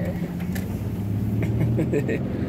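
Car engine and road noise heard inside the cabin while driving, a steady low hum.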